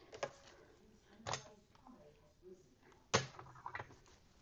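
A few soft knocks and handling sounds as fabric is laid on a tabletop ironing board and a clothes iron is picked up.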